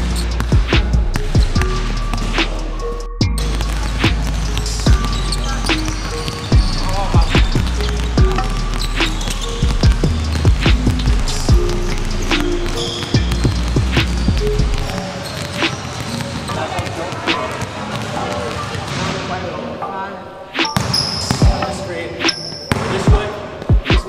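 Basketballs dribbled on a hardwood gym floor: many quick, irregular bounces from several players drilling at once. Background music with a steady bass line runs underneath; the bass drops out about 15 seconds in.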